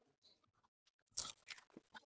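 Paper and a stiff plastic folder being handled: faint ticks, then a short crinkly rustle a little over a second in.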